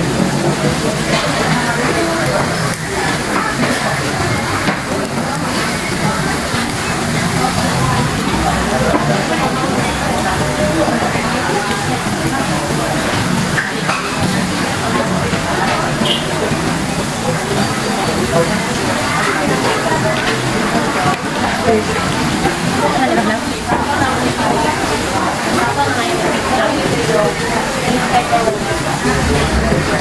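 Busy restaurant din: many people talking at once, with music playing underneath.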